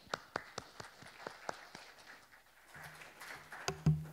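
A few scattered sharp taps, then a low steady hum from the lectern microphone as it is handled, ending in a loud thump near the end.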